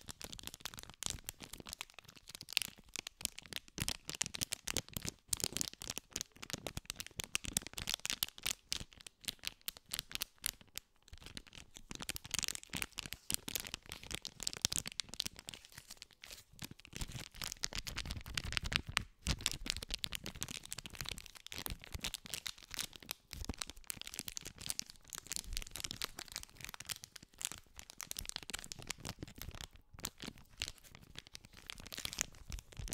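A small printed packet being crinkled and squeezed between the fingers right at a condenser microphone. It gives a dense run of fast, crisp crackles with a few brief pauses.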